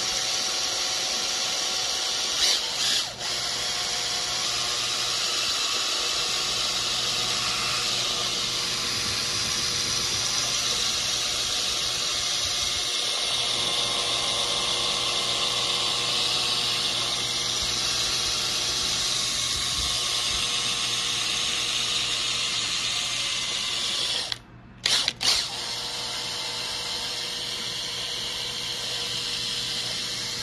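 Power drill spinning a paddle mixer in a pail of paint, running steadily while a touch of grey is blended into white paint. The drill cuts out briefly near the end, then runs on slightly quieter.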